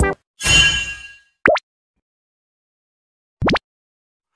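Cartoon sound effects. A short whooshing burst is followed by a quick rising bloop, then a pause. Near the end comes a fast upward swish.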